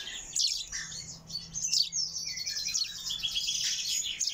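Several common chaffinch chicks chirping: a steady stream of quick, high-pitched calls, many of them falling in pitch.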